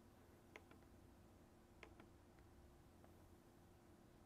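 Near silence: room tone with a faint steady hum, broken by a few faint clicks about half a second in and again near the two-second mark, from clicking through a menu on a computer.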